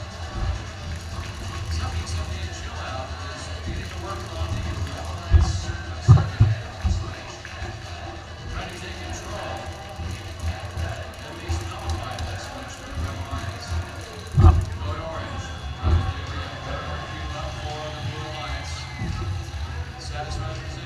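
Loud arena mix: music over the PA with a heavy bass and indistinct crowd chatter, broken by several sharp thumps, two of them about 5 and 6 seconds in and two more at about 14 and 16 seconds.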